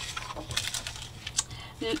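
Sheets of paper and a clear plastic packet of clear stamps being handled: a few light, scattered clicks and crinkles, the sharpest about one and a half seconds in.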